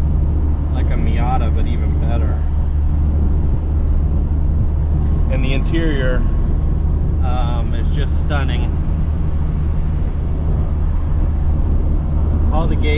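Classic Mini's engine and road noise droning steadily inside the small cabin while cruising at an even speed.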